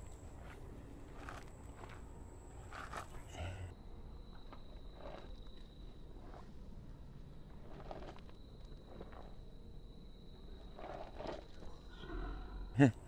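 Quiet outdoor ambience through an action camera's built-in microphone, with a few soft footsteps as the person holding it turns around on the spot. A faint steady high whine drops to a lower pitch about four seconds in, where the footage is slowed down.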